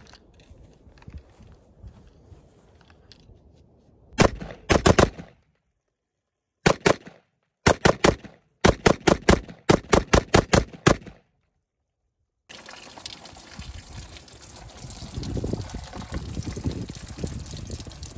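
AR-15 pistol firing a magazine dump of about twenty rounds into a case of bottled water, in several rapid strings with short gaps between them. From about twelve seconds in, water splashes and trickles out of the punctured bottles.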